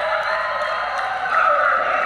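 Basketball shoes squeaking on the court floor, drawn-out squeals sliding in pitch, the loudest about one and a half seconds in.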